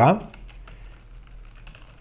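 Computer keyboard typing: a run of light, faint key clicks.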